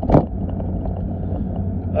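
Steady low road and engine rumble inside a moving car's cabin, with one short sharp noise just after the start.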